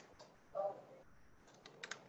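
Faint computer keyboard keystrokes: a couple of clicks near the start and a quick run of clicks near the end.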